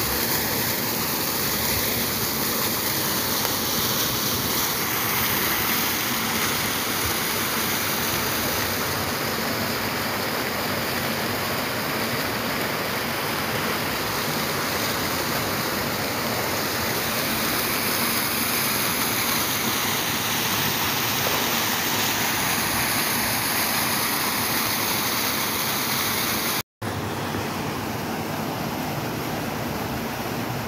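Fountain jets splashing into a pool: a steady rush of falling water. The sound cuts out for an instant near the end and comes back slightly softer.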